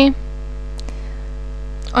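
Steady electrical mains hum on the recording, with a faint single click a little under a second in.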